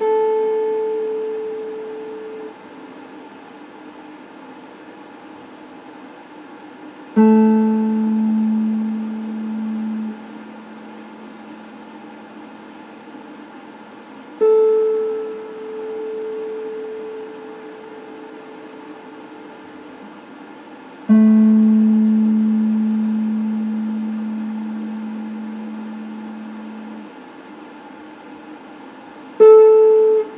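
Electric guitar playing single notes, each plucked and left to ring out, about seven seconds apart: five notes in all. Two of them are lower-pitched and sustain longest, one for about six seconds. A steady hiss fills the gaps between notes.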